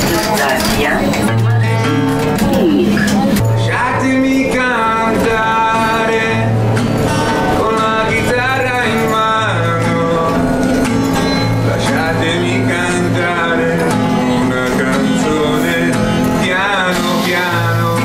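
A man singing with vibrato while playing guitar, the low bass notes repeating steadily under the sung melody.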